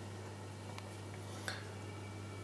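Quiet room tone with a steady low hum, and a faint click about one and a half seconds in.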